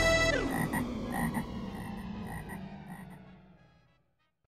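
The song's last held chord slides down in pitch, then a frog-croaking effect follows: a string of croaks, about two or three a second, fading out.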